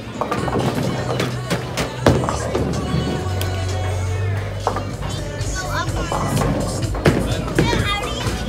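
Bowling alley sound: a bowling ball rolling down the lane and crashing into the pins about two seconds in, with further clatters of pins and balls from other lanes, over music and voices.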